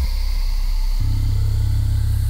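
Ambient electronic music: a loud, low synthesizer drone that moves up to a higher note about halfway through.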